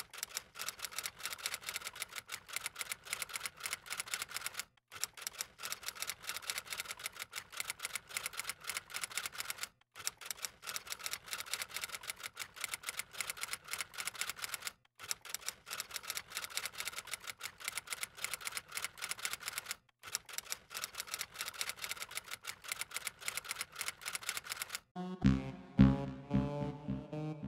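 Typewriter typing sound effect: a rapid run of key clicks that stops for a moment about every five seconds and starts again, as if typing line after line. Near the end the clicking gives way to louder music.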